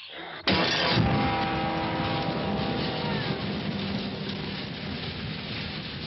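Motor vehicle engine starting abruptly about half a second in, then running loudly and steadily.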